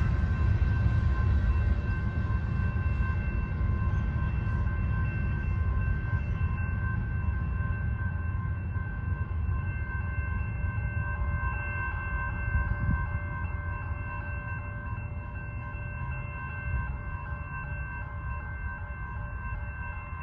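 Freight train rolling past as its last tank cars and covered hopper clear, the low rumble of the wheels on the rails slowly fading as it moves away. Several steady high ringing tones sound throughout.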